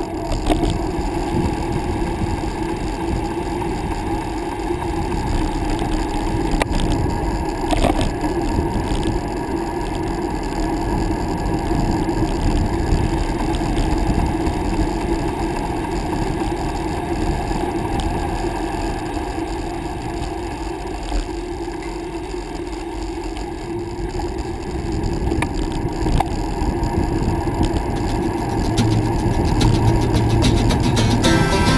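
Bicycle coasting downhill on pavement: wind rushing over the camera microphone and the tyres humming on the asphalt, with a few small knocks from bumps, growing louder near the end as speed builds.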